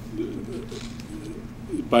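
A man's voice in a low, quiet, wavering hesitation sound between phrases, with his speech starting again near the end.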